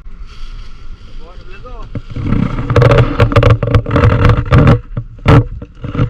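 Indistinct talking, with a loud run of clattering knocks and noise close to the microphone from about two to five seconds in, and one more loud knock shortly after.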